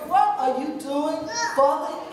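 Speech only: a woman preaching.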